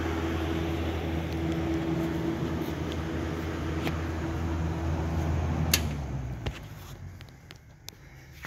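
Air Products 300CP wire welder powered up but not welding: a steady transformer hum with its cooling fan running. A sharp click comes near six seconds in, and then the hum and fan fade away as the machine winds down.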